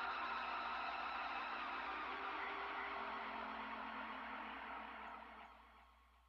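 Outro logo sound effect: a steady hissing whoosh with a faint hum beneath it, fading away over the last second.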